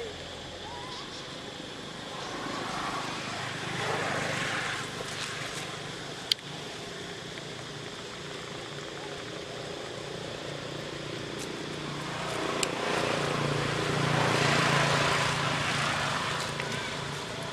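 Engine drone from a passing vehicle or aircraft, swelling twice, around four seconds in and again near the end. A single sharp click comes about six seconds in.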